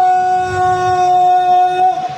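A single loud tone held at one steady pitch for nearly two seconds, stopping abruptly just before the end.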